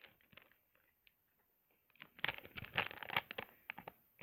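Plastic Skittles bag crinkling as it is handled, a few faint rustles at first and then a dense crackling run from about halfway through.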